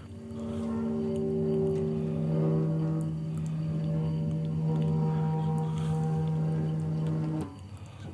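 Electroacoustic improvised music: a sustained drone of several steady tones layered into a chord. It comes in about half a second in and cuts off suddenly near the end, with faint small clicks and crackles around it.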